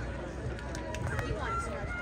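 Indistinct distant voices of people around an outdoor track, talking and calling out, over a low rumble, with a few sharp clicks in the first second or so.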